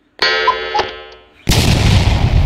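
Edited-in dramatic sound effects: a sustained pitched tone that fades over about a second, then a loud explosion effect crashing in about a second and a half in.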